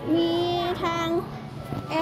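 A voice speaking Thai in two long, level-pitched syllables, with background music faintly underneath.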